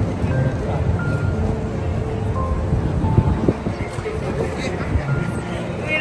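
Busy city street ambience: a crowd of voices and passing traffic, with music of a simple melody of short notes playing over it.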